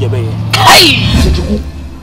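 A person's sudden loud cry, a harsh sneeze-like outburst about half a second in that falls in pitch and trails off over the next second.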